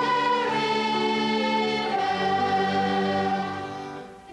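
Children's choir singing long held notes over instrumental accompaniment. The chord shifts about halfway through, and the sound dies away near the end.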